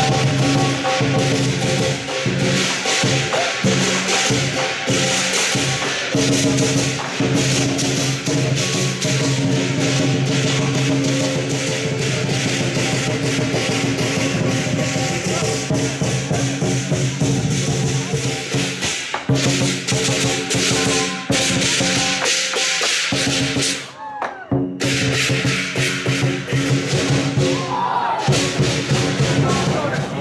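Lion dance percussion: a big drum with crashing cymbals playing a fast, continuous rhythm, with a brief break about three-quarters of the way through.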